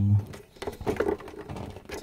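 Handling noise: a scatter of light clicks and rustles.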